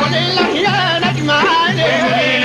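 Upper Egyptian Saidi folk music: a steady low beat under a wavering, ornamented melody line that bends up and down in pitch.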